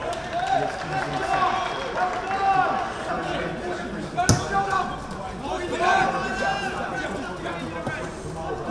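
Football players shouting to each other across the pitch, several voices calling over one another, with one sharp thud of a boot striking the ball about four seconds in.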